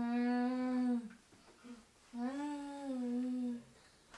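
A voice humming long held notes: one hum ends about a second in, and a second starts about two seconds in, rising slightly in pitch and then falling before it stops.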